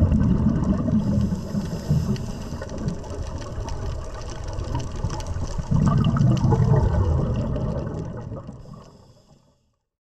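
Underwater sound of scuba divers breathing out through their regulators: bubbling, gurgling bursts near the start and again about six seconds in, fading out near the end.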